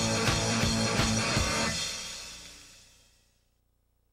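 Rock soundtrack music with guitar and drums, fading out over a second or two to near silence.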